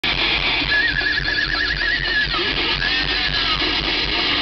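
Thrash metal band playing live through a loud PA, amplified distorted guitars over a steady drum beat, recorded from the crowd. A high wavering note with fast vibrato rises over the band from just under a second in until past two seconds.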